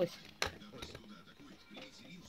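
One sharp plastic click about half a second in, as the pieces of a plastic toy dollhouse are fitted together by hand, followed by faint handling of the plastic frame.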